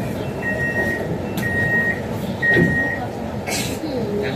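MRT train door warning beeper sounding a single high beep about once a second, three beeps in the first three seconds, over passenger chatter and cabin noise; a short burst of noise comes near the end.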